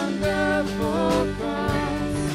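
Live worship band playing: electric guitar, bass guitar, drums and keyboard, with a sung vocal line over them.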